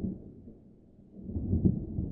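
Low rumble at the opening of a short CGI film's soundtrack, swelling about one and a half seconds in.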